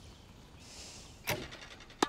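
A soft whooshing hiss lasting about half a second, followed by a short exclaimed "Oh".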